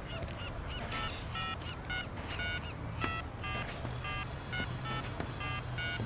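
Mobile phone keypad beeping as a number is dialled: a string of short electronic beeps, about two a second and varying in pitch, over a low steady hum.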